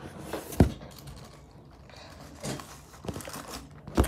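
Handling noise from a phone carried by hand while filming: a sharp knock about half a second in, then a quiet spell and a few soft rustles and light knocks near the end.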